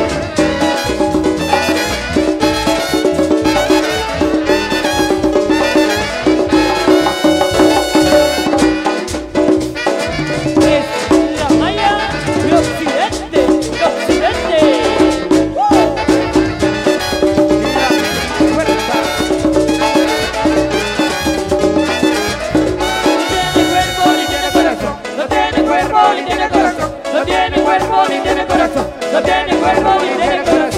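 A Guatemalan marimba orquesta playing a Latin dance number live: marimba with horns and conga drums over a steady, driving beat.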